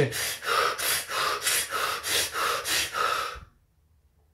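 A man breathing in quick, rhythmic gasps, about three breaths a second: the fast, involuntary breathing a cold shower sets off. The breathing stops abruptly about three and a half seconds in.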